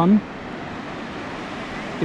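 Steady, even rush of wind and gentle sea surf.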